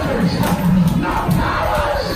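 A preacher shouting through a handheld microphone and PA, with a congregation shouting along in a large room.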